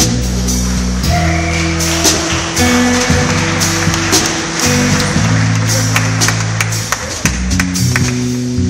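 Live jazz trio of electric guitar, electric bass and drum kit playing; the bass holds long, low notes under a steady wash of cymbals and scattered drum hits.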